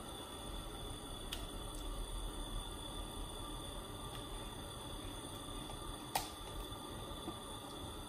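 Faint, soft pouring and scraping as thick jackfruit puree slides from a mixer jar into a pan and is scraped out with a spatula, with a light click about six seconds in.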